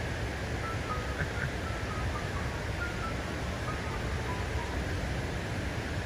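Steady outdoor background noise, an even hiss with no speech, with a few faint, short, high held notes over it.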